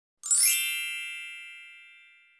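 A bright chime sting: a quick upward sparkle of many high bell-like tones starting about a quarter second in, then ringing out and fading away over about two seconds.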